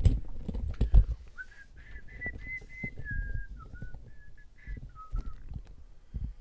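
A person whistling a short tune that wanders and drifts downward in pitch, over knocks and thumps of things being handled on a desk; the loudest knocks come right at the start and about a second in.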